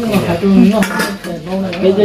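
Metal spoons clinking a few times against ceramic bowls and a small metal pot as food is served, with voices talking underneath.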